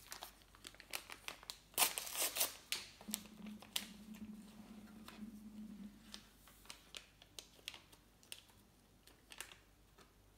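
Paper sachet of baking powder crinkling and rustling as it is handled and torn open, with many short sharp crackles, loudest about two seconds in. A low steady hum runs for about three seconds in the middle.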